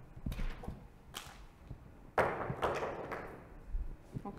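Handling noise as a whiteboard pen is swapped: a couple of sharp clicks, then a short, louder scraping rustle about two seconds in, and a low knock near the end.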